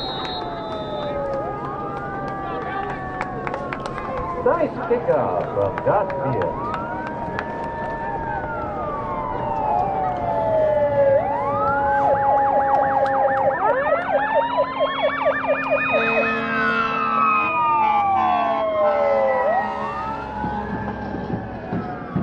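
Several sirens sounding at once, their wails rising and falling over a few seconds and overlapping at different pitches. About halfway through, fast warbling yelps join in and the sound grows louder.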